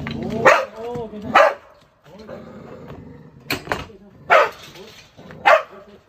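A dog barking: about five sharp barks spread over the few seconds. It is the aggressive shelter dog being blocked off with a barrel.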